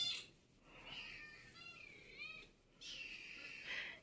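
Young kittens mewing faintly: a few short, high calls in the middle.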